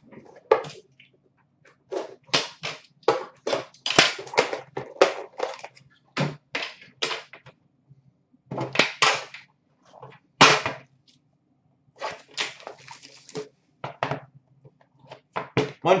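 A cellophane-wrapped metal trading-card tin being unwrapped, handled and opened: a series of short, irregular crinkles, scrapes and clicks, in clusters with brief pauses between them.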